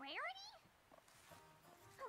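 A short cartoon vocal cry that rises sharply in pitch, like a small animal's whine, in the first half second, then faint background music.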